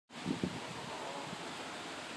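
Steady outdoor background noise with wind on the microphone, starting abruptly as the sound comes in, with a low bump shortly after.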